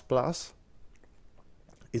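A man's voice finishing a word, then a short quiet pause with a few faint clicks, then the voice starting again just before the end.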